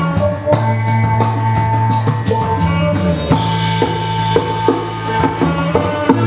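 Live psychedelic rock band playing: a drum kit beats steadily under held bass and drone notes, with a sitar in the mix.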